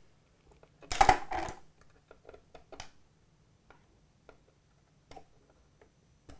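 Handling noises from tool and hand work on a small acrylic-and-metal 3D printer frame: a short clatter about a second in, then scattered light clicks and taps.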